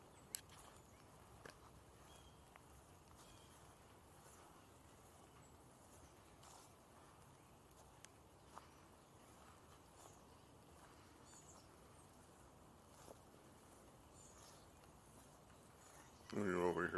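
Near silence: faint outdoor ambience with a few scattered soft ticks and clicks.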